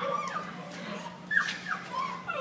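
Dachshund giving a few short, soft whines, two of them close together about a second and a half in.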